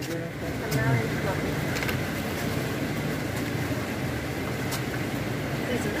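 Steady rushing outdoor background noise with no rise or fall, and a faint voice about a second in.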